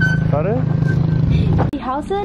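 A small motorcycle engine idling close by, a steady low hum, with people talking over it; it cuts off abruptly about three quarters of the way through.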